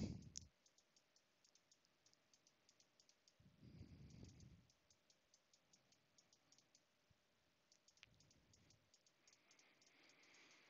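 Near silence with faint, rapid, irregular clicking at a computer, and a soft low rumble twice, about four and eight seconds in.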